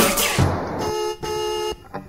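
The last crash of a punk/metal band's song rings out and fades, then a car horn sounds two short toots, about a second in, with a brief break between them.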